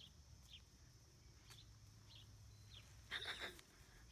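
Mostly near silence, broken by a few faint short chirps and, about three seconds in, one brief louder call from a chicken.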